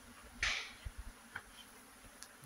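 Honeybee swarm buzzing faintly around its cluster on a tree branch, with a short, louder rush of noise about half a second in.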